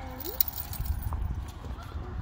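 Small dog's claws clicking and scrabbling on concrete as it moves about excitedly on its leash, with one sharper knock about half a second in.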